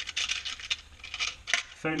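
Short metal screws rattling and clinking inside a small box as it is handled and opened: a quick run of small, sharp clicks.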